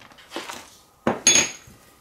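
A sharp clink about a second in, with a short high ring, as a glass can-shaped cup is handled and knocked on the craft table. Fainter rustling comes before it.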